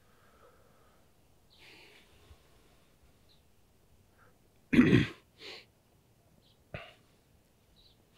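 A man breathing faintly, with one short loud cough-like burst from the throat about five seconds in, then a softer breath and a single sharp click.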